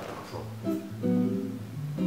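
Electric guitar: a few notes picked one after another and left to ring, with several notes sounding together about a second in.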